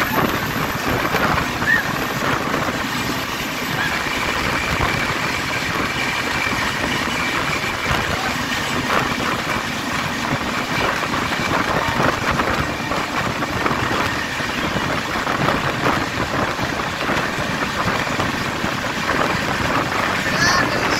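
Running noise of a moving EMU local train heard at its open doorway: a steady roar of steel wheels on rails and rushing wind, with an express train running on the next track close alongside. A faint steady whine sits above the roar throughout.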